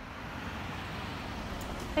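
A car driving through a parking lot: a steady rush of tyre and engine noise that swells gradually, then holds.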